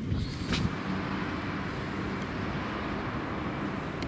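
Steady road traffic noise from vehicles on the street, with a brief high squeal near the start.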